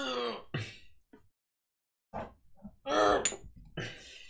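A man's short wordless vocal sounds, hum- or grunt-like: one at the very start and a longer one about three seconds in, with near silence between.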